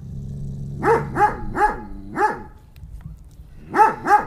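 A Doberman barking in alert at something beyond the garden hedge: a low growl, then a quick run of four deep barks, a short pause, and another bark near the end.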